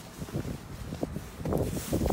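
Rustling and soft, irregular low bumps as a person climbs out of a car's driver's seat, with handling noise from the hand-held phone.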